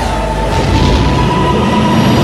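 Sci-fi hyperspace-jump sound effect: a loud, steady, rumbling rush of noise with a single held tone above it.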